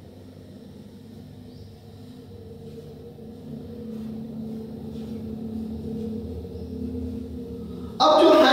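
A low steady hum and rumble with a couple of faint droning tones, slowly growing louder. Over it come a few faint strokes of a marker writing on a whiteboard.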